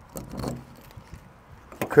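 Key and add-on door lock being handled on a van's sliding door: faint handling noise, then a few sharp clicks near the end.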